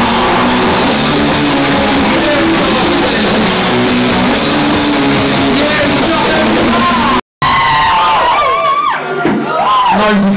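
Live rock band playing loud, full-band rock. About seven seconds in, the sound cuts out for an instant, then a lone voice sings or shouts over a sparser backing.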